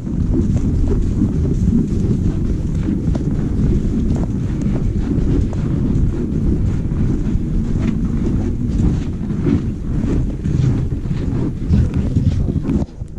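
Loud rumbling buffeting on the camera microphone, like wind noise, from a camera carried while walking, with scattered light crunching footsteps on the packed snow floor.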